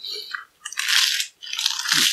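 Crisp lettuce leaves crunching and crackling as they are torn and bitten into, in three bursts.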